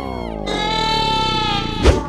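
An added buzzy comedy sound effect: one long tone rich in overtones whose pitch slowly slides down, ending in a short sharp hit near the end.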